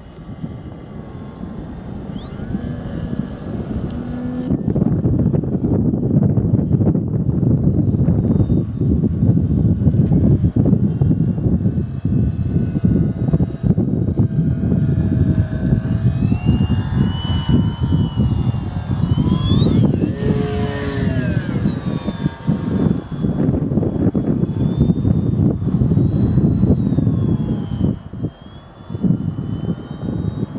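Electric motor and propeller of a Multiplex FunCub RC model plane whining, the pitch rising and falling as the plane passes low, loudest about twenty seconds in. Heavy wind rumble on the microphone runs underneath.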